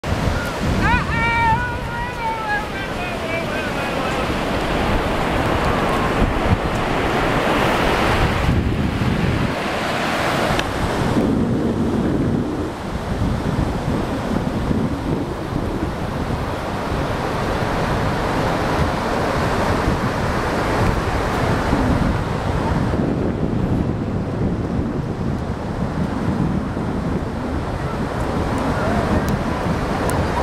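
Surf washing up on a sandy beach, with wind buffeting the microphone. About a second in, a brief high call falls in pitch over a few seconds.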